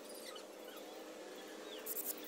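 Faint high squeaks from a frog held in a snake's jaws, its distress call, over a low steady hum. A short crackle near the end.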